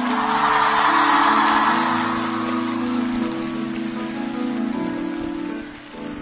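Live band playing slow sustained keyboard chords that change every second or so. A hissing wash of noise swells at the start and fades away over the next few seconds.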